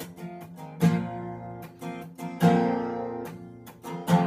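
Acoustic guitar strummed, with chords left ringing. Two strong strums come about one second and two and a half seconds in, with lighter strokes between them.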